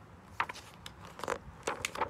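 Paper pages of a large picture book being handled and turned: a few short rustles and crackles.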